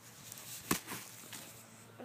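Faint crunching of playground wood chips, with one sharp snap a little past a third of the way in.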